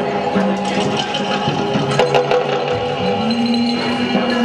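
Improvised group music made by guests: several held tones at different pitches layered together, with scattered knocks and clicks.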